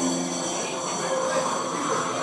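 EDM house mix from a DJ controller in a breakdown: the bass and held chords drop out, leaving a quieter hissy, noisy wash with faint high tones, like a filter or noise sweep in a transition.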